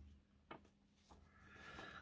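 Faint handling of a paper magazine page as it is turned: a light click about half a second in, a softer one a moment later, then a quiet rustle of paper building near the end.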